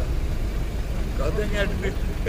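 A stationary car's engine running at idle, a steady low rumble, with a man's voice speaking over it in the second half.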